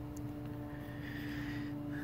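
Steady low background hum carrying one constant tone, with no distinct events.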